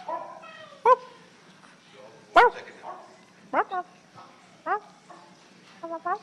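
A dog barking: five short, sharp barks, about a second apart.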